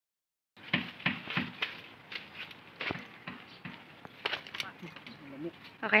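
Faint talking mixed with short clicks and knocks, ending in a clearly spoken "Okay?".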